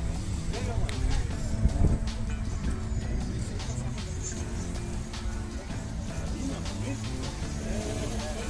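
Car engines running among many cars gathered in a lot, with voices and some music in the background.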